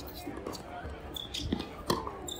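Tennis ball bouncing on a hard court, then a crisp racket strike near the end as a topspin forehand is hit, the loudest knock here. Faint voices murmur underneath.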